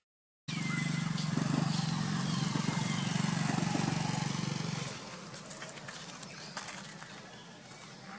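A motor vehicle's engine running close by, a steady low hum that starts abruptly about half a second in and fades away around five seconds in.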